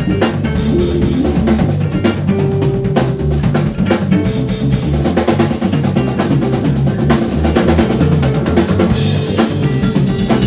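Live rock band playing an instrumental passage: a Tama drum kit keeping a busy beat of kick, snare and cymbals under electric bass and electric guitar.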